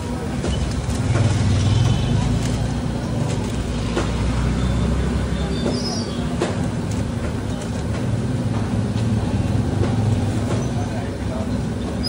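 Busy street ambience: a steady low rumble, with background voices and a few sharp clicks.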